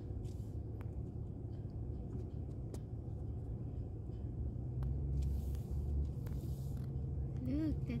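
Car engine and road noise heard from inside the cabin while driving slowly: a steady low rumble that grows louder about five seconds in, with a few light clicks.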